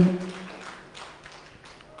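Sparse, faint hand clapping from a small congregation, a few scattered claps, after the end of an amplified man's voice ringing out in the room.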